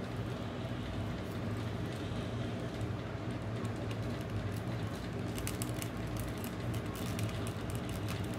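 Steady low room hum with faint small clicks in the second half, from a plastic action figure and its gun being handled.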